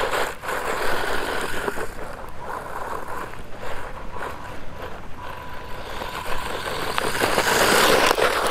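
WLToys 124019 RC buggy driving on gravel: the whine of its brushed electric motor and the rush of its tyres over the loose surface, growing louder near the end.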